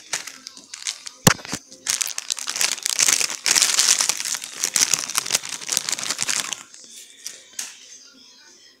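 Thin plastic snack-cake wrapper crinkling as it is handled and pulled open: a sharp snap about a second in, then several seconds of dense crackling that dies down near the end.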